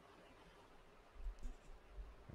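Near-silent room tone, with faint low thuds and a brief rustle in the second half.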